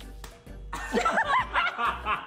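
High-pitched laughter breaking out about a second in, over quiet background music.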